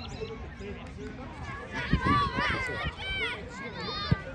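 Children's voices shouting and calling out on a football pitch, growing louder from about two seconds in, over a steady outdoor background, with a single thump about two seconds in.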